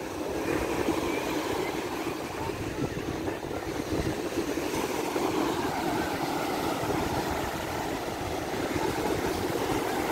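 Rough surf breaking on the shore, a steady rushing noise, with wind buffeting the microphone.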